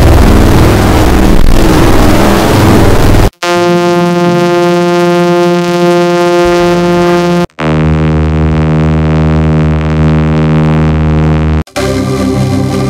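Heavily distorted, effect-processed audio: a harsh noisy stretch for the first three seconds or so, then two held buzzy tones, each steady in pitch for about four seconds, with abrupt cuts to silence between the sections.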